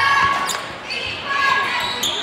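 Basketball bouncing on a hardwood gym floor, with short, high-pitched sneaker squeaks from players moving on the court, in a large echoing gym.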